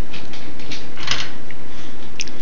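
Steady background hiss with a few faint light clicks and a brief brighter scrape about a second in.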